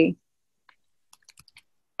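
A handful of faint, irregular light clicks spread over about a second.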